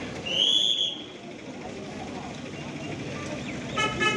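Busy street traffic and background voices, with a short high whistle about half a second in and a brief car horn near the end.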